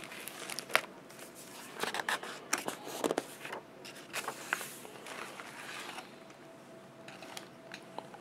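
Pages of a hardcover picture book being handled and turned: irregular paper rustling and crackling with sharp clicks, busiest in the first six seconds, then settling.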